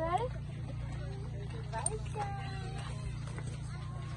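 Indistinct voices in short snatches, over a steady low hum.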